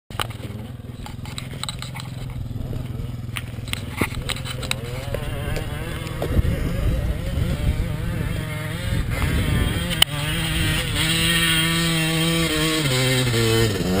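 Suzuki RM250 two-stroke motocross bike climbing a steep hill, its engine revving up and down. The engine is faint at first and grows steadily louder as the bike nears, with its pitch stepping and rising in the last few seconds.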